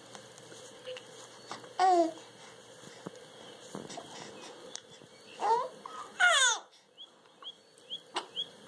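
Young infant cooing: three drawn-out vocal sounds that glide in pitch, about two seconds in, then at about five and a half and six seconds in. Near the end come a few short, high, rising chirps.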